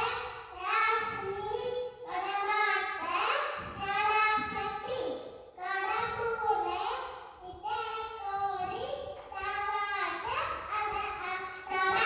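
A young boy chanting a shloka into a handheld microphone in a high sing-song voice, phrase after phrase with short pauses between.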